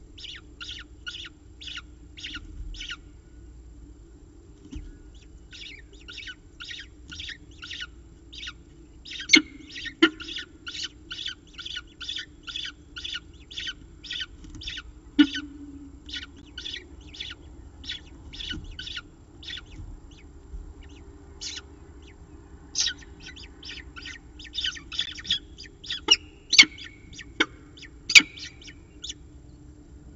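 Peregrine falcon chick begging for food while being fed, a rapid run of short high calls at about two a second in several bouts with brief pauses. A few sharp knocks stand out, mostly near the end, over a low steady hum.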